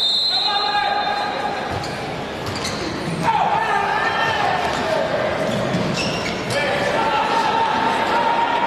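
Futsal match in an indoor arena: a referee's whistle ends just as the free kick is taken. Then the ball is kicked and knocks on the hard court a few times over crowd noise echoing in the hall, swelling a little just after three seconds as a shot goes in.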